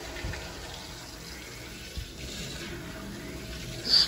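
Water rushing through a partly opened ball valve into a newly installed double check valve backflow preventer and copper piping as the line is slowly brought back to pressure: a steady flow noise with a faint tick about halfway through.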